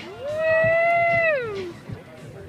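A single drawn-out vocal wail with one clear pitch: it slides up at the start, holds for about a second, then falls away before the end.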